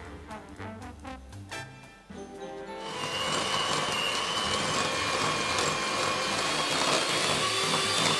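Background music, then about three seconds in an electric hand mixer starts and runs steadily with a whine as its beaters cream butter and sugar together.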